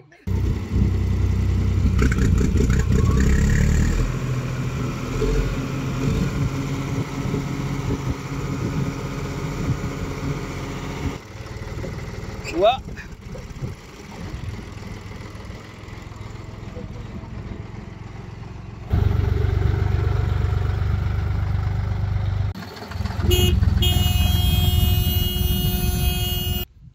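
A John Deere 5310 farm tractor's three-cylinder diesel engine running, heard in short clips that cut in and out abruptly, with one brief rising tone about twelve seconds in.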